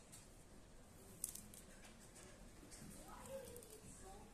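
Faint handling of flat plastic basket-weaving wires in the hands: light rustling and ticking, with one sharp click about a second in.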